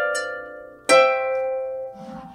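Lever harp playing blocked root-position triads: one chord rings out and fades, and a second chord is plucked about a second in and rings on.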